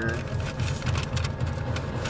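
Paper food wrapper crinkling and rustling as it is handled, over the low steady rumble of an idling car.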